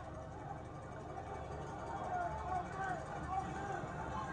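Faint, indistinct voices over a steady murmur of stadium crowd noise from a televised football game, heard through the TV's speaker.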